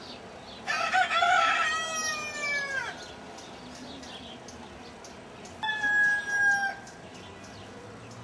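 A rooster crowing: one long crow about a second in that falls in pitch as it trails off, followed by a shorter call about five and a half seconds in.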